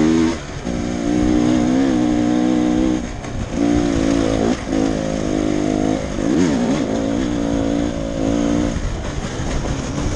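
Enduro dirt bike engine running under load on a rough trail, its revs climbing and falling with the throttle. The revs drop off briefly several times, about every second or two.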